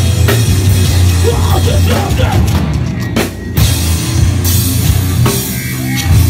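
Hardcore metal band playing live, with heavy bass and distorted guitar over pounding drums. The band stops briefly a little after halfway, then crashes back in.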